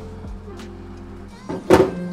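Background music with steady held notes, then near the end a sharp metallic clunk as the latch of a cast iron Aga oven door is released and the door swings open.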